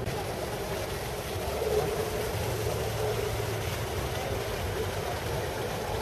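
Car engine idling steadily, with a low hum that strengthens in the middle, over a murmur of crowd voices.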